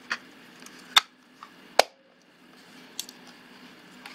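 Four short, sharp clicks and knocks of a JCPenney SLR 1 camera body being handled and turned over by hand, the second and third the loudest.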